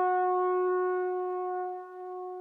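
One long held brass note, horn-like, at a steady pitch and slowly fading, in a pop song's intro.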